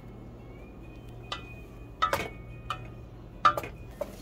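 A few sharp clinks and knocks of a spoon against a saucepan of meatballs in tomato sauce, four short strikes spread over the few seconds, the second the loudest.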